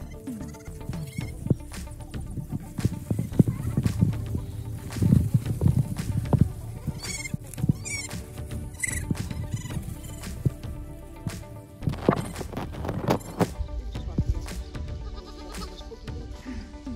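Background music, with a herd of goats bleating now and then.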